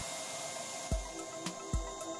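Electric paint spray gun running with a steady hiss as it sprays paint, over background music with a beat.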